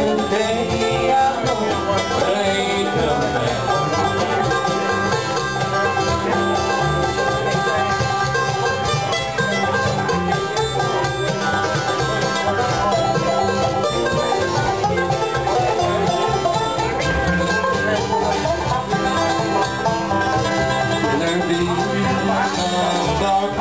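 Live acoustic bluegrass band playing an instrumental break between sung verses: banjo, mandolin, acoustic guitar and upright bass.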